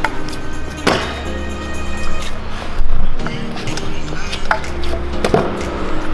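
Stunt scooter wheels rolling on stone paving, with a sharp clack of the deck landing a trick about a second in and another near five seconds, over background music.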